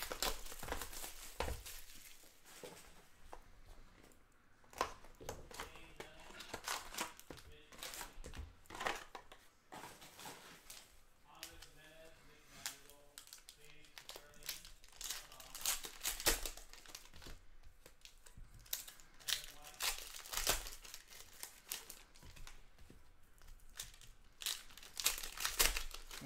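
Plastic and foil wrappers crinkling and tearing as a hobby box of hockey trading cards and its packs are opened by hand, in irregular crackles and rustles.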